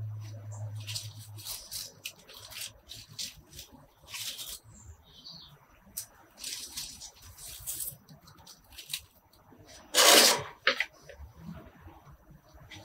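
Rustling and rubbing as a potted young ash bonsai is turned by hand on a turntable, its leaves and the hand brushing in scattered short bursts, the loudest about ten seconds in. A low hum dies away in the first second or two.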